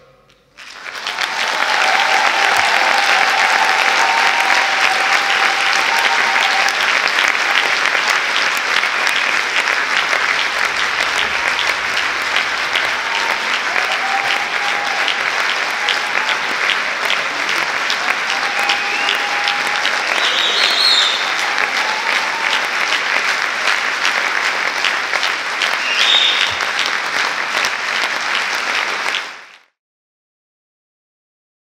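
Audience applauding steadily, with a few voices calling out over the clapping. The applause cuts off abruptly near the end.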